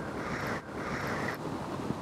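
Wind noise on the microphone: a steady rushing with a brief dip about half a second in.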